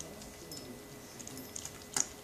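Nursing puppies making faint, soft low grunts while they suckle, with small scattered clicks of sucking and a sharper click at the very end.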